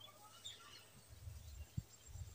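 Faint outdoor background with a few short bird chirps, low rumbles, and a soft thump near the end.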